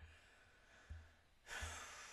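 Near silence, then a soft breathy sigh about one and a half seconds in, fading out over half a second.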